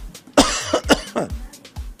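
A man coughing into his hand, starting about half a second in, over background music with a steady beat.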